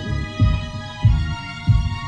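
Background music: a deep, pulsing beat about every two-thirds of a second under sustained synthesizer notes.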